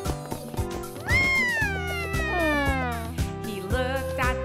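Cartoon background music with a child's long whining cry, starting high and sliding steadily down in pitch for about two seconds.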